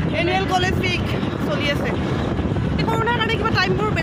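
A woman talking over steady wind and road noise while riding on the back of a moving scooter.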